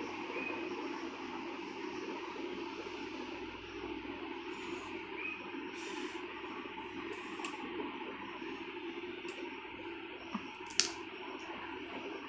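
Steady room noise with soft rustling of long hair being lifted and handled by hand, and one sharp click near the end.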